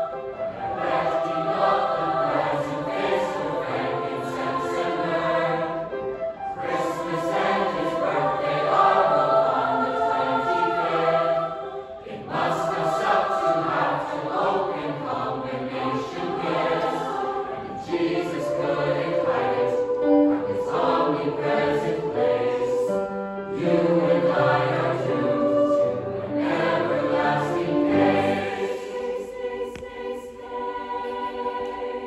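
Large mixed choir of men's and women's voices singing with grand piano accompaniment, in phrases of about five or six seconds with brief breaks between them.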